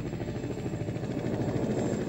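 Helicopter rotor blades beating in a fast, even rhythm, growing louder as the helicopters approach.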